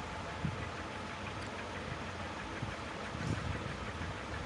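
Steady background hiss and low rumble, with faint scratching of a pen writing on paper.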